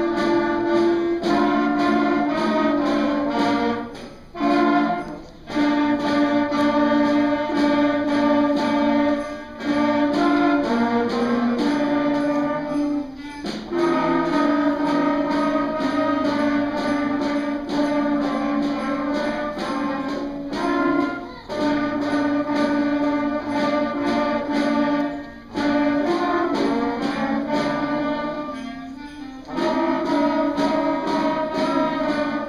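School concert band of clarinets, flutes and brass playing a piece in held phrases a few seconds long, each separated by a brief pause for breath.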